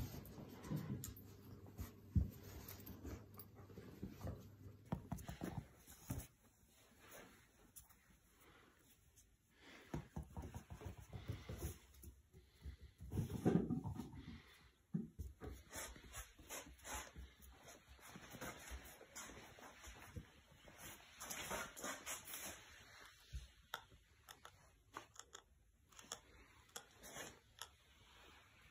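Faint sounds of a puppy and a dog in a string of short clips, with scattered small knocks and one louder dog vocal sound about thirteen seconds in.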